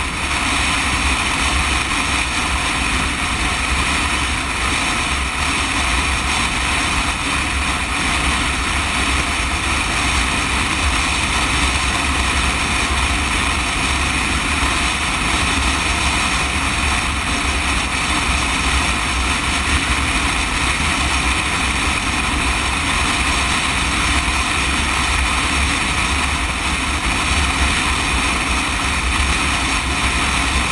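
Sport motorcycle cruising at a steady highway speed: constant wind rush over the microphone with low buffeting, mixed with engine and tyre noise.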